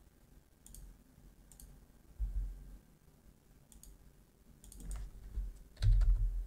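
Computer mouse buttons clicking several separate times, with dull low thuds about two seconds in and at the very end, where the loudest click comes.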